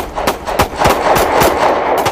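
A rapid, uneven string of loud sharp bangs, about four a second, over a steady rushing noise.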